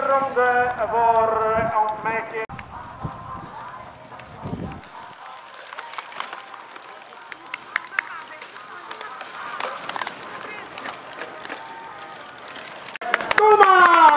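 A voice talking briefly, then faint open-air background with a few light clicks. Near the end comes a loud, long shout that falls steadily in pitch: a cheer as a cyclocross rider crosses the line.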